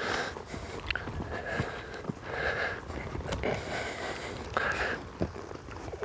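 Horse and cattle moving about on dirt: a few scattered soft hoof knocks over a steady outdoor rustle.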